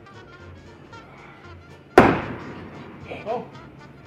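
A thrown hatchet hitting the wooden target with one sharp, loud thunk about two seconds in, ringing briefly after the strike.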